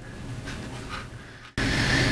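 Faint steady background room noise, cut off sharply about one and a half seconds in by a louder steady hiss.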